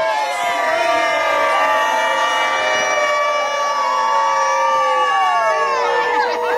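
A crowd of guests cheering and whooping, with many long, drawn-out shouts overlapping one another.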